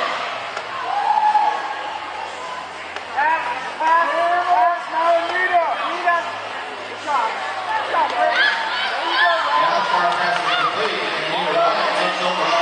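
Voices talking and calling out in a large hall, over a steady low hum.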